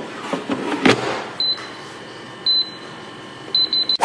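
Air fryer basket sliding in and knocking shut, the loudest knock just before a second in. Then the air fryer's touch control panel beeps as it is set: a single beep, another about a second later, and three quick beeps near the end.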